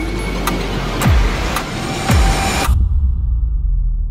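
Movie-trailer music and sound design: a dense, noisy wash with two deep booms that drop in pitch, about a second apart. It cuts off suddenly to a low rumble near the end.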